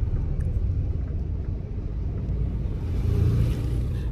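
Steady low rumble inside a car's cabin, swelling slightly about three seconds in.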